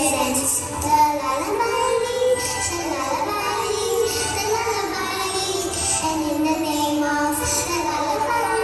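A song with children's voices singing, the melody moving and holding notes without a break.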